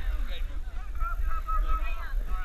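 Several people's voices overlapping in short shouts and calls, with a run of repeated calls on one pitch in the second half, over a low rumble of wind and movement on the body-worn action camera's microphone.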